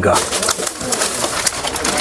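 Crackling rustle of boxed, plastic-wrapped cosmetic packaging being handled and turned in the hand: a dense run of small clicks and crinkles.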